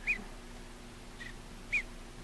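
Mallard duckling peeping: two short high peeps, one at the very start and one near the end, with a fainter peep between them.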